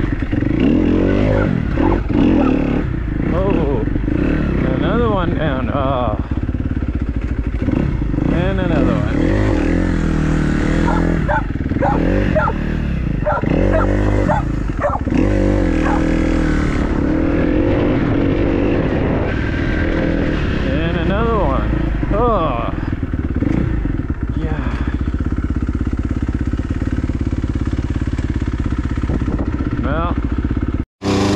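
Dirt bike engine running while it is ridden along a trail, the revs rising and falling again and again, most busily through the first half and again a little past two-thirds of the way.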